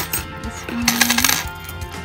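Metal bangle bracelets clinking and jingling against each other as they are handled, with a quick run of clinks about a second in, over background music.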